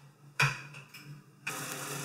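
A brief knock about half a second in, then a pot of water at a rolling boil on a stovetop: a steady bubbling hiss from about halfway through.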